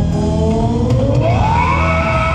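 Live rock band jamming, heard in an audience recording, with a sustained lead tone that glides upward in pitch and then holds a high note near the end.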